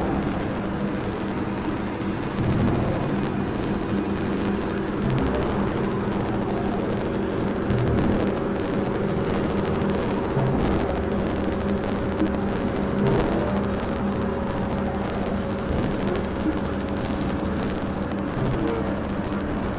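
Experimental synthesizer drone and noise music: steady low droning tones layered over a dense rumbling hiss, with a high whine coming in for the last few seconds.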